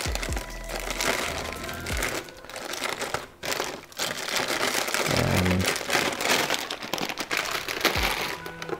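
Plastic toffee packets crinkling and rustling as they are handled and put away, a dense crackle that eases off briefly about three to four seconds in.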